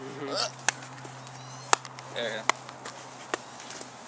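A hacky sack being kicked around: a few sharp taps at irregular intervals, roughly a second apart, the loudest about halfway through, with short snatches of voices between them.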